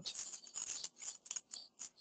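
A few faint, irregular small clicks and rustles, stopping just before the speech resumes.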